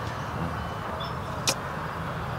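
Steady low background noise outdoors with no voices, with one sharp click about one and a half seconds in.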